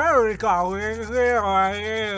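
A voice holding one long, garbled vowel-like sound while teeth are being brushed, with the toothbrush's scrubbing as a fast, scratchy rhythmic hiss over it. It is a mumbled nonsense word offered as a mock auditory illusion.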